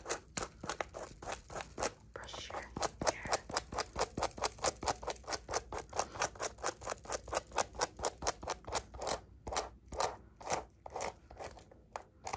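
Fingertips tapping and scratching quickly on the recording phone right by its microphone: an even run of about five sharp taps a second, with a brief pause about two seconds in.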